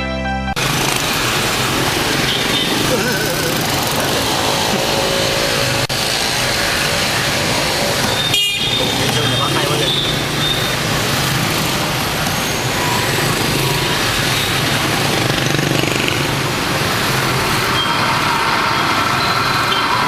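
Loud, dense mix of voices and road traffic noise, with a few short high tones a little before the middle.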